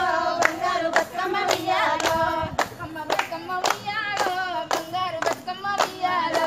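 Women singing a Bathukamma folk song together, with hand claps in a steady rhythm of about two a second.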